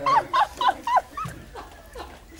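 High-pitched, squealing fit of laughter: a run of short yelping squeaks that fades out after about a second.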